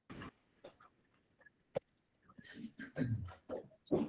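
Quiet call audio with a single sharp click a little under two seconds in, then faint, short, low voice sounds through the last second and a half.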